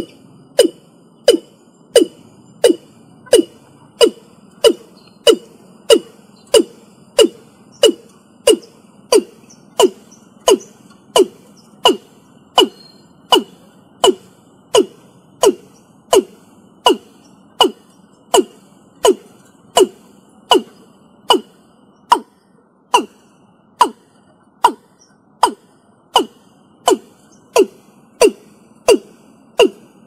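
Male watercock (Gallicrex cinerea) calling: a long, even series of short, low notes, about three every two seconds, each dropping slightly in pitch.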